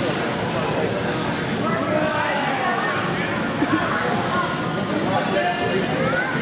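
Overlapping voices of a crowd of spectators and competitors: chatter and calls mixed together at a steady level, with no single voice standing out.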